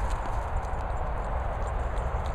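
A dog's paws drumming on frozen, frosty grass as it runs, over a steady rumble of wind on the microphone.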